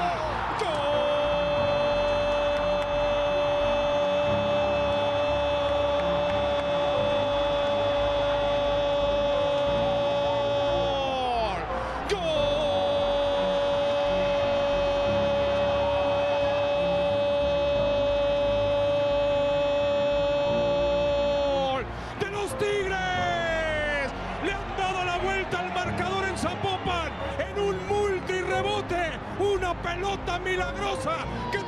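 A football commentator's goal call: a long drawn-out shout held for about ten seconds that falls in pitch at the end, a second equally long shout straight after, then fast excited commentary in the last stretch.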